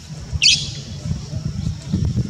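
A short, high-pitched animal squeak about half a second in, over a low, uneven rumble.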